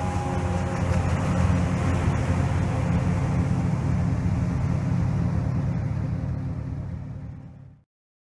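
Jet-drive rescue catamaran with twin two-stage waterjets running at speed close by: a deep, steady engine-and-water rush. It fades out and cuts off just before the end.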